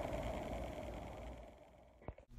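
Faint steady background hiss with no distinct sound events, fading to near silence by the end.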